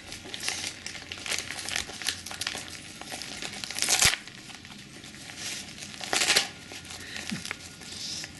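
Christmas wrapping paper crinkling and tearing as a small dog paws and bites at a wrapped present, in irregular bursts, the loudest about four seconds in and again just after six seconds.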